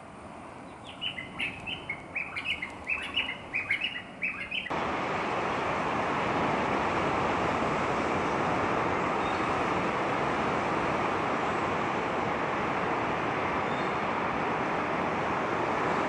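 A small bird chirping in a quick run of short, high calls for a few seconds. Then the sound cuts off suddenly into a steady rushing noise that fills the rest.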